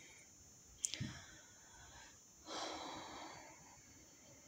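A quiet room with a short sharp click about a second in, then a soft breath lasting about a second past the middle.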